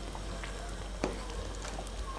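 Faint steady simmering of a pan of chicken and baked beans in sauce, with a few soft clicks as a wooden spoon stirs it against the pan.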